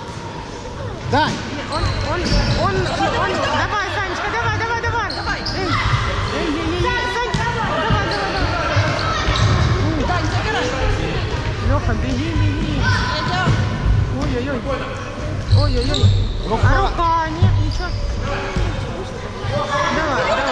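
Children shouting and calling to each other in a large, echoing sports hall, with the thuds of a futsal ball being kicked and bounced on the wooden floor.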